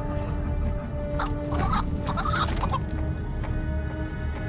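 A chicken clucking in a short run of calls between about one and three seconds in, over a low held music drone.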